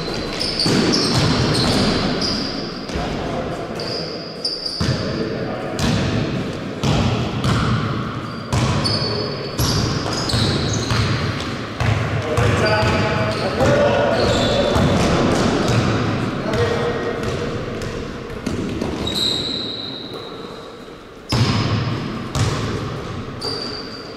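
Basketball bouncing repeatedly on a gym floor during play, with short high squeaks of sneakers on the court, all ringing in a large reverberant hall.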